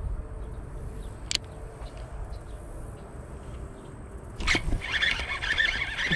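A low rumble with a single sharp click about a second in. Then, from about four and a half seconds in, a baitcasting reel sets up a loud, continuous raspy whir while a hooked bass is being fought.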